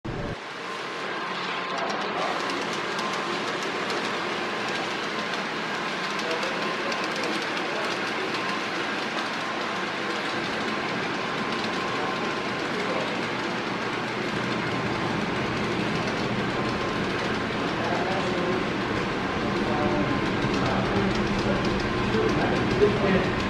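Model freight train running along the layout track: a steady rolling clatter of wheels on rail, getting louder over the last few seconds as the locomotives come close.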